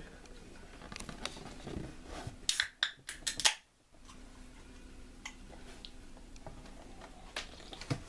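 A quick run of sharp clicks and light clatter from small kitchen items being handled, about two and a half to three and a half seconds in, then a couple of isolated clicks near the end over a faint steady hum.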